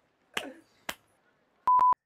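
Two short clicks about half a second apart, then a steady electronic beep near the end, one pure tone lasting about a third of a second, edited in over a cut to a white frame.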